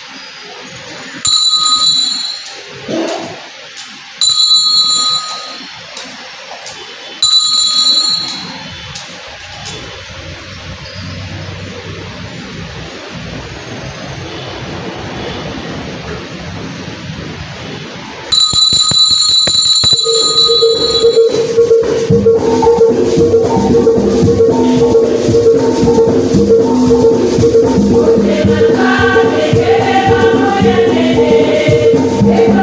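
Altar bells rung in three short rings about three seconds apart, as at the elevation during the consecration, then rung once more at about eighteen seconds. From about twenty seconds in, music with a held note and singing begins.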